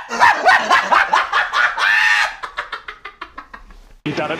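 A string of short, high-pitched vocal bursts in quick succession, coming faster and fading away over the last second and a half.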